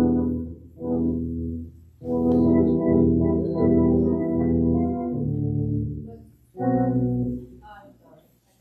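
Electronic keyboard with an organ tone playing a few held chords, each sustained for about one to three seconds with short breaks between them. This sounds out the key for a hymn before the singing starts.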